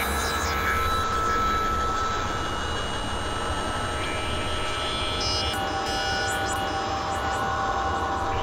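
Experimental electronic drone and noise music from synthesizers: a steady low rumble under a hiss, with several held high tones, and new tones entering about halfway through.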